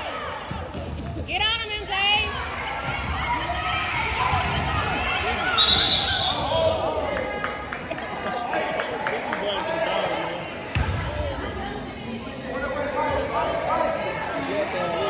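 Basketballs bouncing on a hardwood gym floor, with children's and adults' voices echoing through a large gym. A brief shrill high sound comes about six seconds in, and a heavier thud near eleven seconds.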